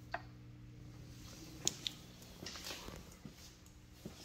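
Faint handling noises in a pickup cab as someone gets out: a click just after the start, two sharp clicks about a second and a half in, then a short spell of rustling and light knocks. A low steady hum underneath fades out in the first second and a half.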